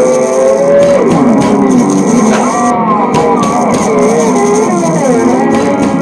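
Funky blues instrumental: a lead line of long held, bending and sliding notes over guitar, with drums keeping a steady beat.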